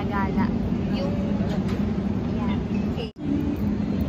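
Outdoor city street ambience: a steady low hum of traffic or an idling vehicle, with faint passing voices. It cuts out abruptly for a split second about three seconds in.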